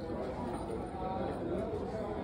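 Indistinct voices of people talking in a room, a background murmur of conversation with no piano playing.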